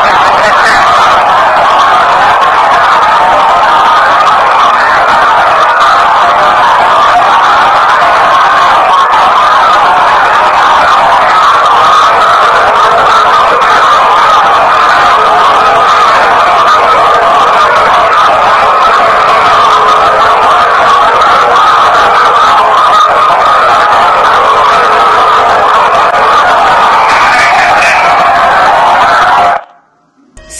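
Playback of a digital voice recorder's spirit-box/EVP recording: a loud, steady, hissing wash of noise centred in the midrange, which is presented as heavenly harp, bells and chimes. It cuts off abruptly just before the end.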